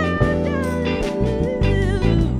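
Live soul-jazz band playing: electric bass, drums, Fender Rhodes and electric guitar, with a sliding, bending melody line on top.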